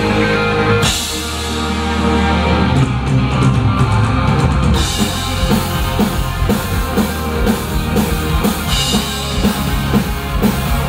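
Live heavy metal band playing loud, with distorted guitars, bass, keyboards and a drum kit. Held chords fill the first half, and the drums then settle into a steady beat.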